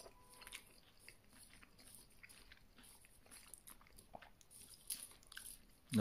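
Faint, close-up chewing of a mouthful of boiled dumplings, with small irregular mouth clicks.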